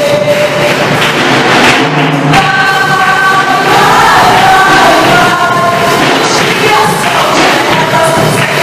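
Loud worship music with several voices singing together in long, held notes that slide between pitches.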